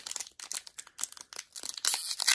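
Foil wrapper of a Pokémon trading card booster pack crinkling in the hands as it is worked open at the top, in irregular short crackles that grow louder and denser near the end.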